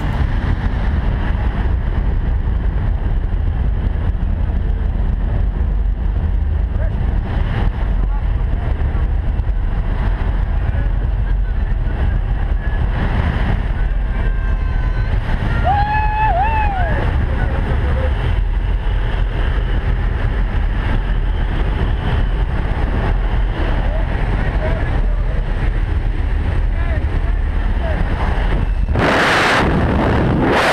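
Light aircraft's engine and slipstream wind in the cabin of a jump plane with the door open: a steady, loud drone. A brief pitched call comes about halfway through, and a louder rush of wind starts just before the end.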